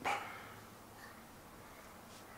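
A dog gives one short bark.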